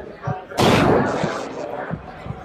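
Cinematic boom sound effect: one sudden loud hit about half a second in that rings out and fades over about a second, with a few short low thumps around it.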